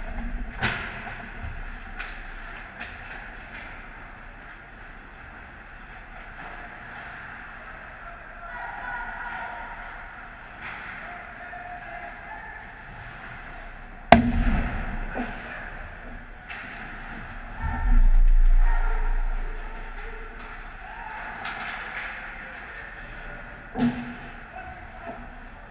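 Ice hockey play heard from the goal: skate blades scraping and carving the ice on and off, one sharp crack a little past halfway, and a loud low rumble a few seconds after it.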